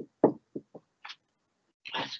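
Whiteboard marker tapping on the board: four quick knocks within the first second, then a brief hiss about a second in.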